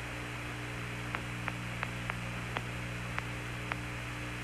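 Open radio voice channel between transmissions: a steady low electrical hum under a hiss of static, with a few faint, irregular clicks.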